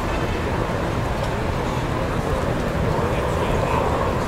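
Busy city street ambience: a steady rumble of traffic under an indistinct babble of people talking.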